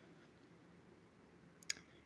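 Near silence: room tone, broken by two small sharp clicks in quick succession about a second and a half in.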